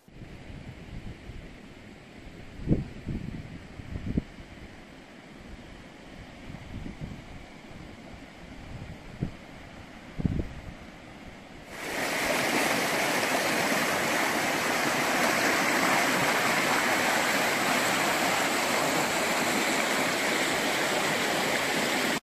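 A low rumble with a few dull thumps, then, about halfway through, the sudden start of a mountain stream rushing over rocks. The stream is loud and steady.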